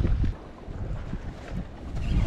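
Wind buffeting the microphone, loudest for a moment at the start, over the wash of choppy lake water around the boat.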